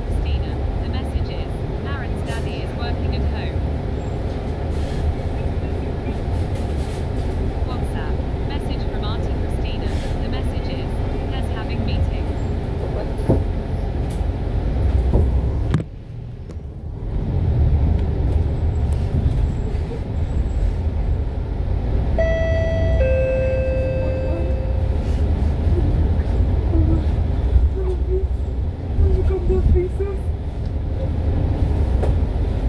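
Interior cabin noise of a MAN A95 double-decker bus under way: steady low engine and road rumble. It dips briefly about halfway, and a little after there is a two-note electronic tone, the first note higher than the second.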